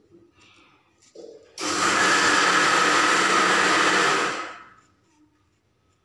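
A loud, steady rushing noise from an off-camera household appliance starts suddenly about a second and a half in, runs for about three seconds, then dies away, after faint small handling sounds.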